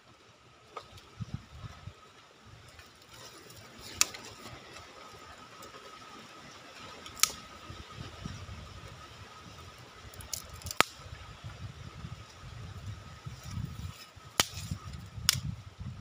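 Small fire of dry palm fibre and twigs crackling, with about six sharp pops or snaps spread through. Low rustling and knocks come as sticks are laid on the flames.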